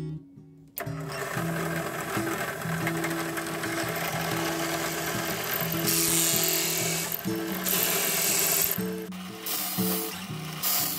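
Drill press starting about a second in and running a cutter against the end of an amboyna burl pen blank to face it square, with the cutting noise growing louder and brighter in two spells in the second half. Background music plays throughout.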